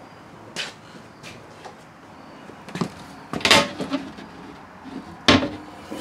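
Interior cabinet and door fittings being handled: a few short sharp clicks and knocks, the loudest about halfway through and another near the end.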